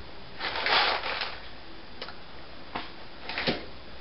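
Handling noise: a rustle about half a second in, then a few light knocks as small objects are put down and picked up.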